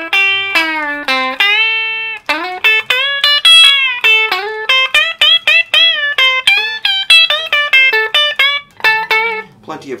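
Electric guitar played through a 1957 Fender Deluxe tube amp with a 1960s Jensen replacement speaker: a run of single picked notes, several a second, many of them bent up or down in pitch.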